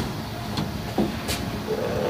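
Low, even background hiss with a couple of faint, brief clicks, one just over half a second in and one past a second.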